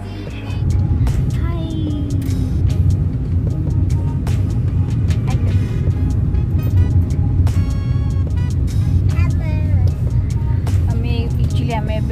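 Steady low rumble of a moving car heard from inside the cabin, setting in about half a second in, with a voice and music over it.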